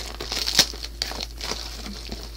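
Plastic shipping mailer being opened by hand: irregular crinkling and rustling, with a sharp crackle about half a second in.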